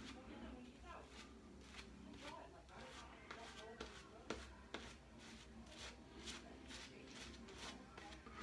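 Shaving brush working lather over the face and neck: faint, irregular soft scratchy strokes.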